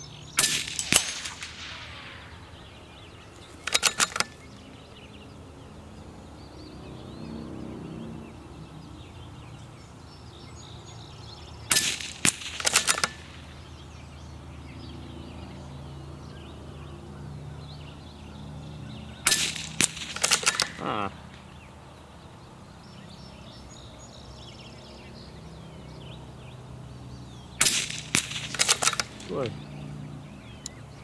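About five shots from a CZ-455 Trainer .22 LR bolt-action rifle, fired several seconds apart. Each is a short cluster of sharp cracks and clicks.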